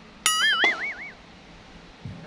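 Cartoon 'boing' spring sound effect: a sharp twang about a quarter second in, its pitch wobbling up and down several times before it dies away after about a second.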